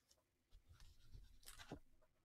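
Near silence, with faint soft scraping and rustling of something being handled, starting about half a second in and lasting about a second and a half.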